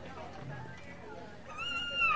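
Soft background music, then about a second and a half in a single high-pitched call that holds briefly, lifts a little, and then slides down in pitch as it ends.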